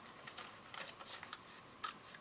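Small craft scissors snipping through a thin printed sheet: a series of faint short snips, mostly in the second half.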